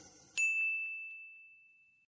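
A single bright ding from the end-logo sound effect, struck about a third of a second in, with one clear high tone ringing on and fading away over about a second and a half.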